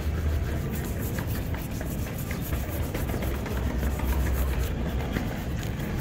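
Shoe-shine cloth and brush rubbing briskly over a black leather shoe: quick, repeated buffing strokes, heard over a low steady rumble.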